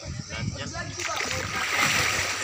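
Water splashing as a person moves through a shallow pool, swelling over the second half to its loudest near the end. Voices in the first second.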